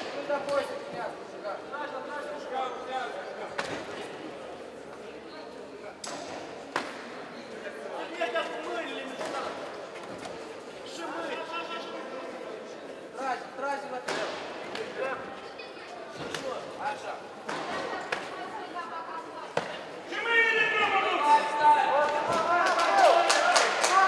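Voices calling out in a large hall, with sharp slaps and thuds now and then from gloved punches and kicks landing. About twenty seconds in the voices grow louder and denser.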